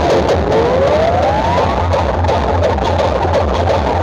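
Dance music played loud through a huge outdoor sound-system rig of stacked subwoofers and horn speakers, with a pulsing heavy bass beat. A rising synth sweep climbs through the first two seconds or so.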